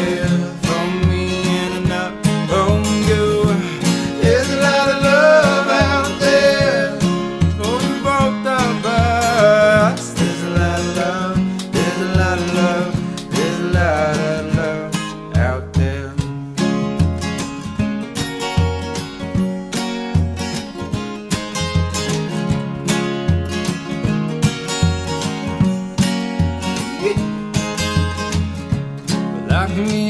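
Acoustic folk band playing an instrumental break: two acoustic guitars strum and pick chords while a hand drum keeps a steady low beat. A lead line with sliding, bending notes rises above the guitars for roughly the first fifteen seconds.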